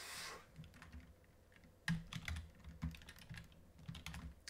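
Typing on a computer keyboard: a quick, uneven run of keystrokes starting about two seconds in.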